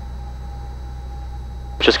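Steady low drone of a Cessna 172's engine and propeller in cruise-descent power on final approach, heard muffled through the cockpit intercom feed, with a thin steady whine over it. A voice starts right at the end.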